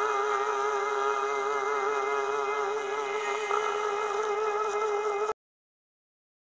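Karaoke backing music ending on a long held chord with a wavering pitch, which cuts off abruptly about five seconds in.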